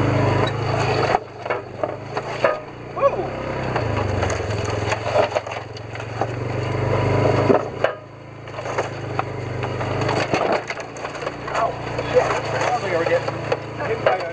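Polaris side-by-side running slowly through dense brush, its engine a steady low hum that eases off briefly about a second in and again near the middle. Twigs and branches crack and scrape against the vehicle throughout.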